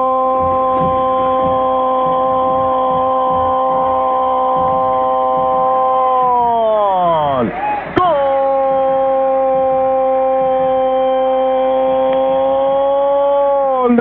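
A radio football commentator's long drawn-out goal cry: one held 'gooool' that slides down in pitch as his breath runs out about seven seconds in, then picks up again at once and is held steady to the end. The sound is narrow and thin, as heard over AM radio.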